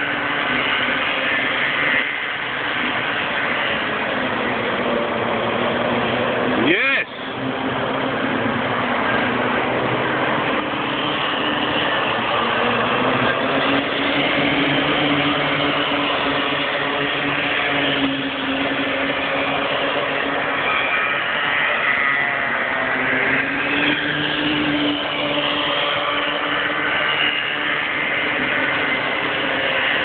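Several bambino karts' small two-stroke engines running in a race, their pitches rising and falling as the karts come through the corners and pass. A brief knock about seven seconds in.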